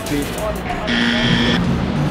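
Background music: a held electronic note that sounds for under a second and repeats about every two seconds, with a brief spoken answer at the start.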